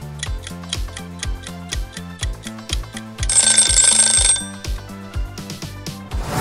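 Upbeat background music with a steady beat. About three seconds in, a ringing alarm-bell sound effect lasts about a second as the countdown timer runs out.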